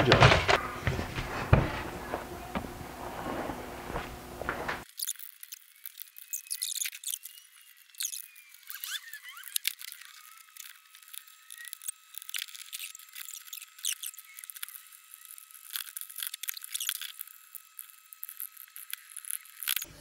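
Screwdrivers clicking and scraping against the hard plastic shell of a Nerf Rival Charger blaster as its screws are backed out and the case is worked open. About five seconds in, the sound turns thin and tinny, leaving scattered high-pitched clicks and faint squeaks.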